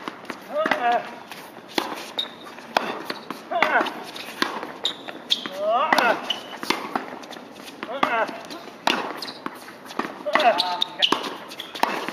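Tennis balls struck with rackets in a close-range volley exchange at the net: a run of sharp pops about every half second to second. Voices and a laugh near the end come between the shots.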